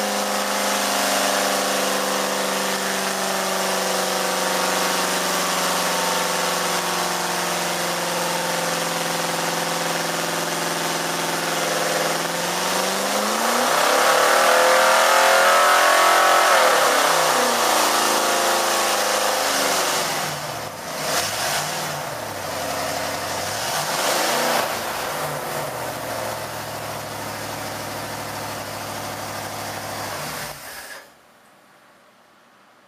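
Race-built 462 cubic inch Pontiac V8 with three two-barrel carburetors running on an engine dyno. It holds a steady speed, revs up and back down once about halfway through, gets two quicker blips a few seconds later, then settles to a lower idle near the end.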